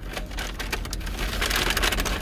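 Close-up rustling and crackling: a dense run of small crackles over a soft hiss.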